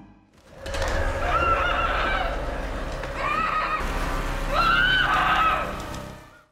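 A woman's muffled screams through a cloth gag, three wavering cries in a row, over a low rumbling drone.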